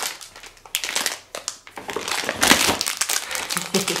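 Plastic sweet packets crinkling and rustling as they are handled, in a run of irregular crackles that is loudest about halfway through.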